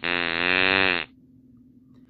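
A wrong-answer buzzer sound effect: one low buzz about a second long, marking a failing grade.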